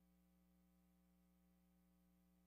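Near silence: only a very faint steady hum.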